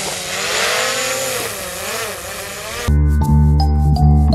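DJI Mavic Pro quadcopter's propellers whining as it lifts off, the pitch rising and falling as the motors change speed. About three seconds in it cuts off abruptly into background music of plucked or struck notes.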